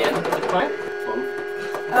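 A single steady electronic note, held for about a second and a half, from a Little Tikes 3-in-1 Music Machine toy instrument as the baby presses on it through its box.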